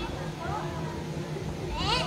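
Faint voices talking in the background, then a high-pitched voice rising near the end.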